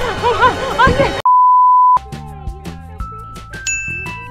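A steady high-pitched beep lasting under a second, about a second in, with all other sound cut out under it: an edited-in bleep sound effect. Before it come excited voices; after it, background music with a steady beat.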